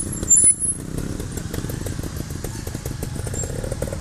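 Trials motorcycle engine running at low revs, with a short louder burst about half a second in.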